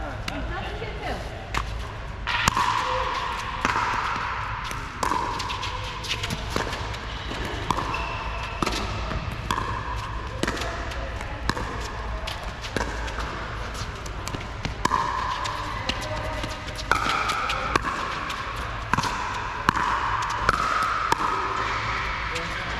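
A pickleball rally: repeated sharp pops of paddles striking the plastic ball, with the ball bouncing on the court, coming about once a second.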